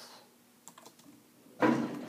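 A few faint computer keyboard keystrokes as text is typed, followed near the end by a voice starting to speak.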